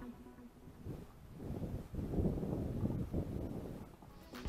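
Wind buffeting the microphone in uneven gusts, rising from about one and a half seconds in.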